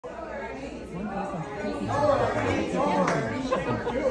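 Overlapping chatter of several people talking at once, with the echo of a large hall; no single voice stands out clearly, and the talk grows louder about two seconds in.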